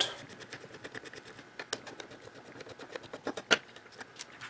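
Small Phillips screwdriver backing two tiny Phillips screws out of a Lutron Maestro dimmer switch's aluminum front housing: a run of faint, irregular light clicks and ticks of metal on metal, with one sharper click about three and a half seconds in.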